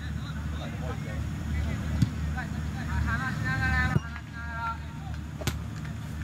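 Distant shouts and calls of football players, with one drawn-out call about three seconds in and a few sharp knocks, over a steady low rumble.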